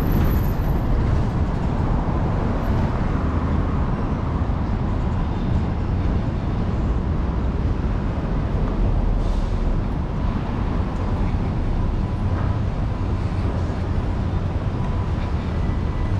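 Steady city street traffic noise, mostly a low rumble, with no distinct single event standing out.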